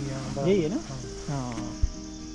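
Steady high-pitched chirring of crickets, with a short stretch of voice about half a second in and background music underneath.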